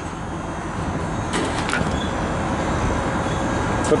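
Steady low rumble of vehicles and machinery running, with a couple of brief metallic clatters about a second and a half in.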